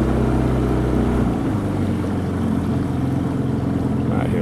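A small boat's outboard motor running steadily at low speed. Its note changes a little over a second in, as the deepest part of the drone drops away.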